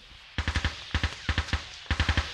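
Machine-gun fire: a rapid, uneven string of shots starting about half a second in.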